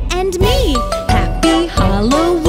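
Children's Halloween song: a voice singing the closing line over bouncy backing music with bell-like chimes, the voice swooping up and down in pitch about half a second in.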